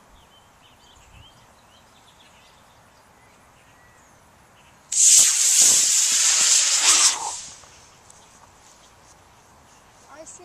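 Model rocket's solid-fuel motor igniting and launching: a sudden loud hiss about five seconds in that holds for about two and a half seconds, then fades as the rocket climbs away.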